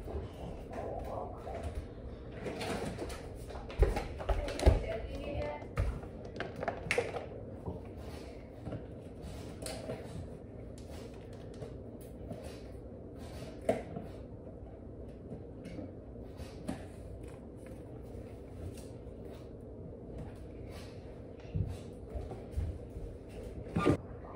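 Scattered knocks and thumps of a wooden kitchen cabinet and countertop being handled while someone climbs onto the counter and takes down a bag of sugar. The loudest knocks come about four seconds in and again near the end.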